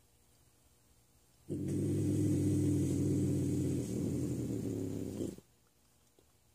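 Young bobcat growling over its food: one low, steady growl of about four seconds that starts abruptly about a second and a half in and cuts off suddenly.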